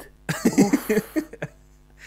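A person's short, broken vocal sounds, not words, during the first second and a half, then a lull with only faint steady hum.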